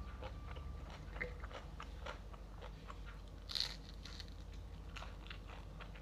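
A person chewing and biting crunchy food close to the microphone, with small crackling crunches throughout and one louder crunch about three and a half seconds in.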